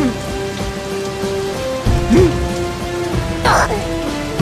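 Cartoon sound effect of heavy rain, a steady hiss, under sustained notes of background music. There are short vocal glides about two seconds in and again near the end.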